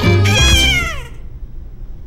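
Cartoon soundtrack: music with a high, cat-like vocal squeal that glides downward in pitch and trails off about a second in.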